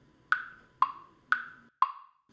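Quiz thinking-time sound effect: a wood-block tick-tock, two knocks a second alternating between a higher and a lower pitch, four knocks in all, counting down the time to answer.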